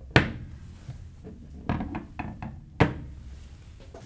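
Knocks and taps of a metal micrometer and a machined aluminum part being handled and set down on a wooden table. A sharp knock comes just after the start, a few lighter taps follow around two seconds in, and another sharp knock comes shortly before three seconds.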